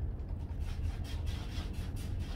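Handheld pump-action pressure sprayer being worked, giving a quick run of light rubbing strokes, about five a second, over a steady low hum.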